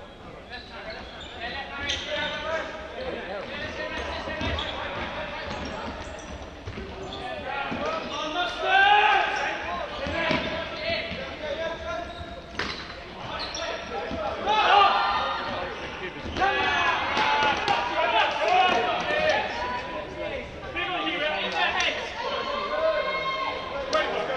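Players calling out and running on the wooden floor of an indoor sports hall during an ultimate frisbee game, with the calls and footfalls echoing around the hall. The calls come in waves, loudest about nine and fifteen seconds in.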